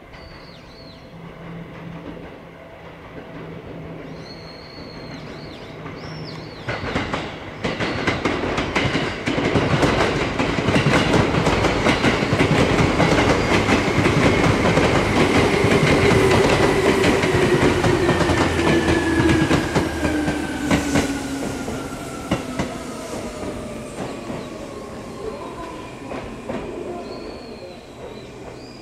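Seibu 2000-series electric train passing close by as it brakes into a station: a fast, dense clickety-clack of wheels over rail joints, loudest in the middle. A whine falls steadily in pitch as the train slows. Birds chirp faintly near the start and the end.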